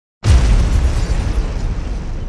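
A cinematic boom sound effect: a sudden deep hit about a fifth of a second in, followed by a long rumbling decay.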